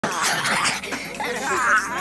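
A boy making animal-like howling and growling cries as he struggles while being held down.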